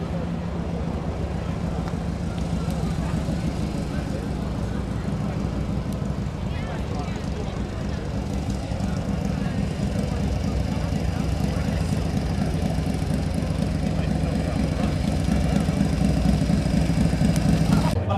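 Outdoor crowd chatter over a steady low rumble like a running engine.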